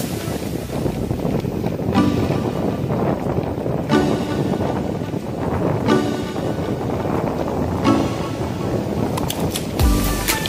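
Background music in a sparse passage with no bass or beat, a short chord sounding about every two seconds, over a steady wind rush on the microphone from the moving ride.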